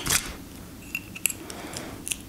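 Light handling sounds of copper foil tape and a plastic foil-crimping tool being worked on a small piece of glass: a short rustle, then a few faint clicks.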